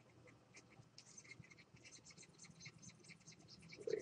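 Near silence with faint, quick scratching ticks, several a second, from a stylus being worked over a graphics tablet during brush strokes.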